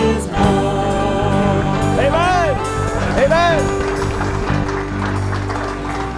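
Church worship band of electric guitar, bass guitar and acoustic guitar playing held chords, with a voice rising over it twice briefly; the band stops at the end.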